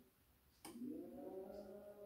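Midea front-loading washing machine's drum motor during the wash tumble. Its whine stops for about half a second, then after a click it starts again and rises in pitch as the drum begins turning, before holding steady.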